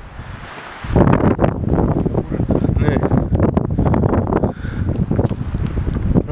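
Wind buffeting the camera's microphone: a heavy, rough rumble that starts about a second in and eases off near the end.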